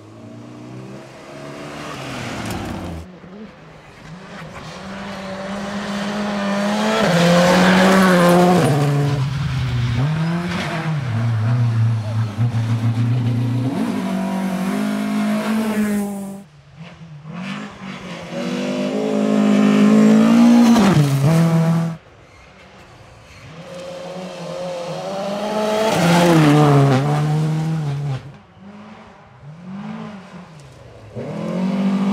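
Rally cars, a Volvo 240 among them, driven hard on a gravel stage in several passes one after another. Each engine revs up, dropping in pitch at gear changes, and swells loud as the car goes by. The passes are loudest about a quarter of the way in, two-thirds in and near the end, and two of them cut off abruptly.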